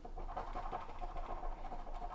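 A coin scratching the coating off a Texas Lottery Super Crossword scratch-off ticket in rapid short strokes, a faint, even rasping.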